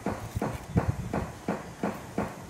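Mason's trowel tapping rhythmically on a mortar-filled concrete form, about three taps a second.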